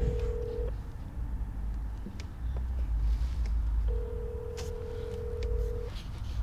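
Telephone ringback tone of an outgoing call: a steady mid-pitched tone that stops under a second in and sounds again for about two seconds from about four seconds in, heard over the low rumble of the car's cabin.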